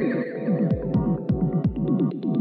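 Techno music: deep kick drums that drop in pitch, about three a second, under sliding bass notes. Sharp hi-hat ticks come in about two-thirds of a second in and quicken near the end.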